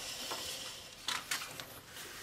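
Planner paper being handled: a page rustling as it is turned, then smoothed flat by hand, with a few light scuffs about a second in.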